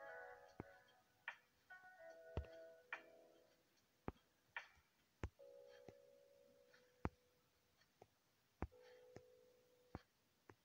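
Near silence: faint held tones in several short stretches, like distant music, with a dozen or so sharp clicks scattered through.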